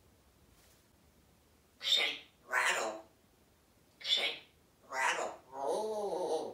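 African grey parrot vocalizing: five short, speech-like mimicked calls about a second apart, the last one longer.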